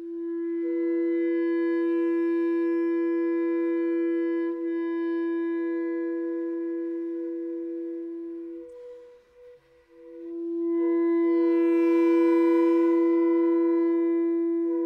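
A contrabass clarinet holds one long, steady note with a fainter second tone sounding above it. The note breaks off about nine seconds in and comes back about a second and a half later, a little louder.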